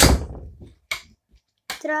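A loud thump with a short rustling tail as a handheld phone is knocked and moved, then a fainter click just under a second later. Near the end a boy says "Okay".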